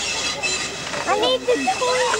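People's voices talking, starting about a second in, over a steady background hiss.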